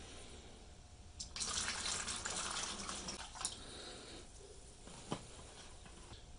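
White vinegar poured from a plastic jug into a plastic tub over the rusty brush axe parts: a steady gushing splash that starts about a second in and tapers off after about three seconds. A single light tap near the end.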